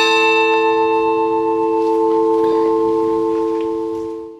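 A single strike on a new bronze church bell, one of a five-bell set cast by the ECAT foundry of Mondovì. It rings on with a steady, many-toned hum and begins to fade near the end.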